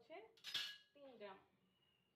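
A single sharp clink of cutlery against a dish about half a second in, with a brief metallic ring.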